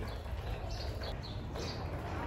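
A few faint, short high chirps of small birds, scattered irregularly over a steady low background hum of a large open store.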